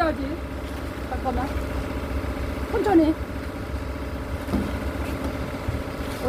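Combine harvester's engine running steadily with a low rumble while its unloading auger discharges threshed oats into a bulk bag.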